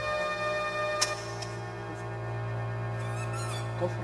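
Music: a sustained keyboard chord over a low held note, with a sharp click about a second in and a short high warbling squeak near the end.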